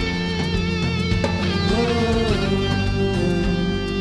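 Live rock band in an instrumental passage, led by an electric guitar playing long sustained notes with vibrato and bends over the backing of bass and drums.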